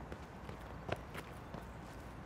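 Quick running footsteps on a paved road: about four light, short steps, the one about a second in the loudest.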